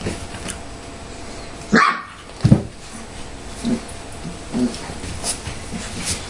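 25-day-old golden retriever puppies playing rough and vocalising: a string of short yips and small barks, the loudest two close together about two seconds in, then smaller ones every second or so.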